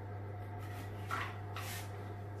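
A metal serving utensil scraping twice in a terracotta cazuela of baked rice, about a second in, over a steady low hum.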